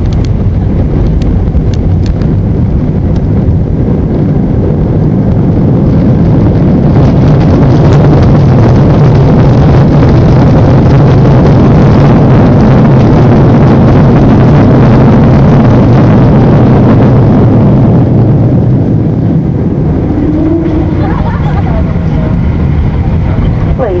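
Airliner's wing-mounted jet engines and rushing airframe noise heard from inside the cabin during the landing rollout. A heavy rumble swells over a few seconds, holds at its loudest for about ten seconds, then eases off: reverse thrust being applied and then released as the plane slows on the runway.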